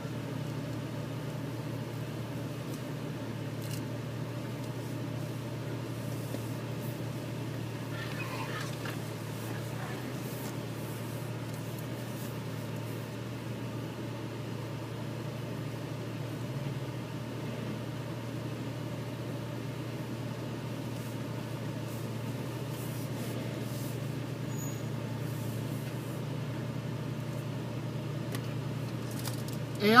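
Vehicle engine running steadily at low revs as an off-roader creeps over a rocky trail, heard from inside the cabin as a constant low hum.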